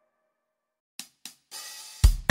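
Near silence for about a second, then two quick cymbal or hi-hat taps and a held cymbal wash: the drum-kit lead-in to a children's song.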